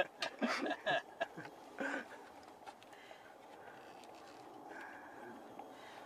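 Short clicks and rustles of hands working a wiring lead and its plug in among a motorcycle's frame and controls, mostly in the first two seconds, then quiet.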